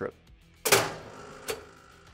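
DS-style low-voltage power circuit breaker tripping open: a loud mechanical clack with a metallic ring that fades over about half a second, followed by a smaller click about a second and a half in.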